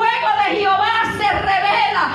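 A woman's loud voice through a handheld microphone and PA, running on without a break and wavering in pitch, with a faint steady low tone underneath.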